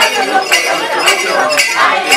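Turkana traditional dance troupe singing and chanting together, with sharp clinking about twice a second as they dance.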